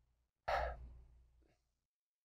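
A man's single short, breathy exhale, like a sigh, about half a second in.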